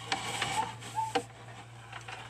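Irregular mechanical clicks and short high squeaks over a steady low electrical hum.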